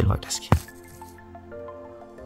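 A single short snap as a young lilac webcap mushroom is pulled and broken from the forest floor, over soft background music with held notes.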